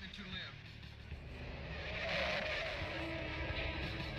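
Film-soundtrack car engine running with a steady low rumble during a night car chase, and a louder noisy rush about two seconds in. A brief voice is heard at the very start.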